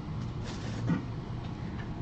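Faint rustling and a few light ticks of a baseball card pack wrapper and cards being handled, over a low steady background hum.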